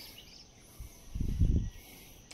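Steady high-pitched insect buzzing with a few faint chirps at the start, and a brief low rumble about a second and a half in.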